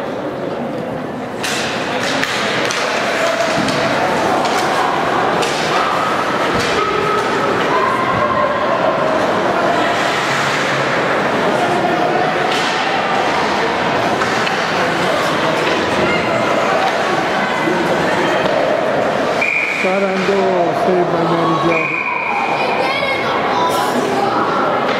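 Ice hockey in an echoing indoor rink: scattered shouts from players and spectators, sticks and puck hitting, and the puck or bodies thudding against the boards. Near the end two short, steady whistle blasts stop play.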